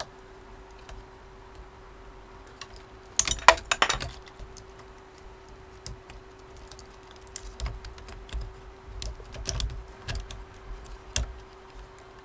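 Small clicks and rattles of the 3D printer's hotend parts and cables being handled and fitted back into place, in a quick burst about three seconds in and then scattered through the rest. A faint steady hum runs underneath.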